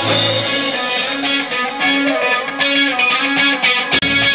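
Live rock band playing a guitar-led instrumental passage, with electric guitar over a run of short, repeated low notes and drums.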